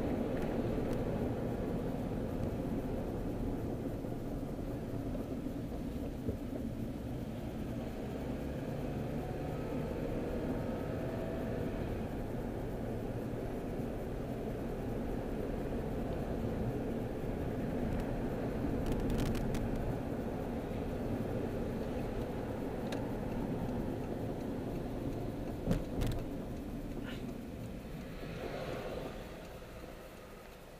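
Steady engine and road rumble of a moving car, heard inside its cabin, with a couple of short sharp clicks in the second half. The rumble grows quieter near the end.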